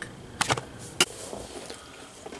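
Three sharp clicks over faint room noise: two close together, then a third about half a second later.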